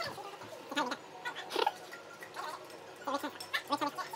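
A man's voice making short, broken vocal sounds rather than clear words, in several brief bursts.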